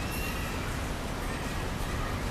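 Steady outdoor background noise: a low rumble with an even hiss, and a faint high chirp early on.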